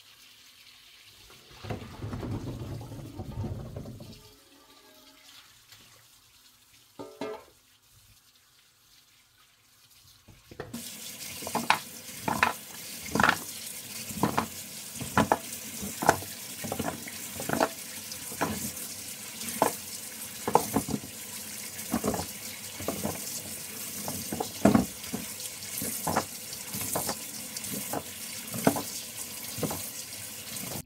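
Kitchen tap running into a stainless-steel sink as carrots are rinsed by hand under it, with frequent knocks of carrots set down on the steel. About ten seconds in, the splashing and knocking become louder.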